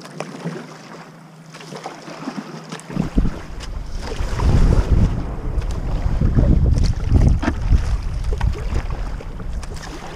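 Kayak paddle strokes splashing and river water rushing past the hull. From about three seconds in, wind buffets the camera microphone with a loud, gusting low rumble.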